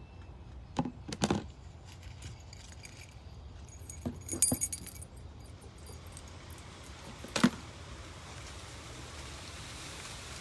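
Small metal objects jingling in short bursts: two about a second in, a cluster around four seconds in and one more near seven and a half seconds. A steady hiss rises near the end.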